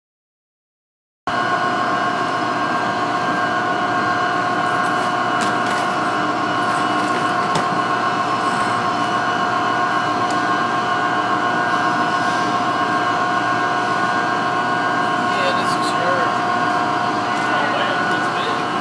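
Loud, steady whine of power-station machinery, several held tones at once, starting suddenly about a second in. Near the end a peregrine falcon chick gives a few faint cries over it.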